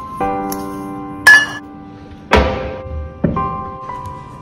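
Background music playing throughout, with kitchen handling sounds over it: a sharp metallic clink of a stainless-steel bowl that rings briefly, about a second in and loudest, then a dull thunk about two seconds in and a smaller knock shortly after.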